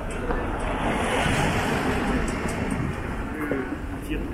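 Street ambience: a passing vehicle's road noise swells about a second in and fades away, with passers-by talking faintly.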